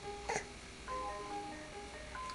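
A simple electronic chiming tune, one plain note at a time stepping through a slow melody, like a toy or music box. A brief squeak cuts in about a third of a second in.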